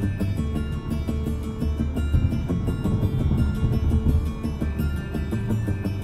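A music track with a steady beat and heavy bass, played through the 2020 Mazda CX-5's 10-speaker Bose sound system and heard from the driver's seat in the cabin.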